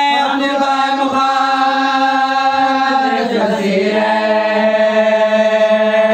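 A lone man's voice chanting a mourning lament without accompaniment, holding long notes that slide and bend between pitches.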